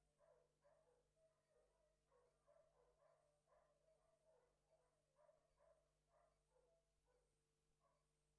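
Near silence, with faint dog barking repeated about twice a second over a steady low hum.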